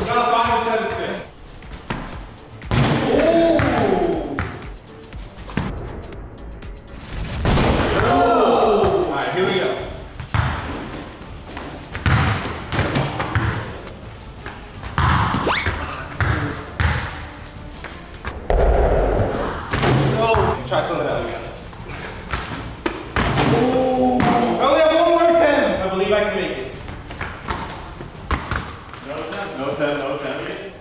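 Dunks on a portable mini basketball hoop: a basketball bounces and thuds on foam floor mats and the hoop's rim and backboard slam, over and over. Shouts and laughter break in, with background music throughout.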